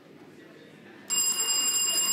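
A contestant's electric buzzer bell suddenly sounding about a second in: a loud, steady electric ring, the signal that a school has buzzed in to answer the question.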